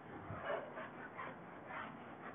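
Whiteboard eraser rubbing across the board in repeated wiping strokes, faint, about two or three strokes a second.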